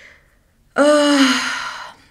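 A woman's voiced sigh, about a second long, falling slightly in pitch. It starts a little under a second in, after a short quiet.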